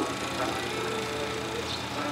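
Steady background noise with a faint, steady hum, in a pause between spoken words.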